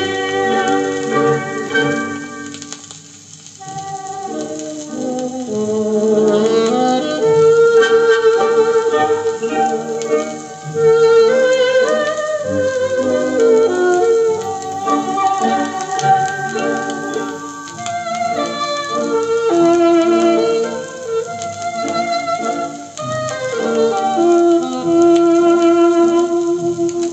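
Instrumental 1950s Soviet estrada music playing from a long-playing record on a portable suitcase record player, with the top cut off as on an old recording.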